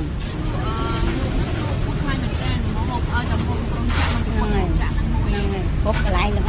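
People talking faintly over a steady low rumble.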